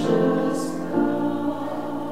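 A group of voices singing a slow hymn in sustained chords, the notes changing about a second in, then slowly fading.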